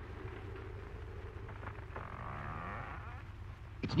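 A hushed pause in an old radio drama recording: a steady low hum throughout. About halfway in comes a faint wavering sound, the noise the characters have been listening for.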